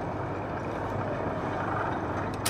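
Steady low rumble and hiss of restaurant room noise, with no distinct events.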